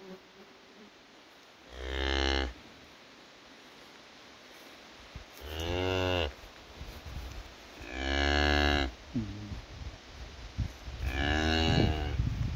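A cow lowing to her newborn calf: four short, low-pitched moos, each under a second, spaced a few seconds apart.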